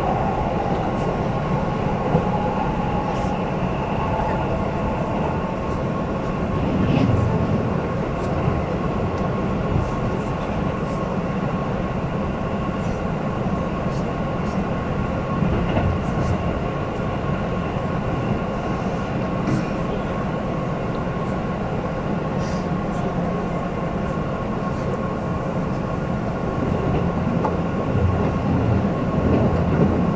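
Inside a Keihan Main Line train running at speed: a steady rumble of wheels on rail with a constant hum and a few faint clicks.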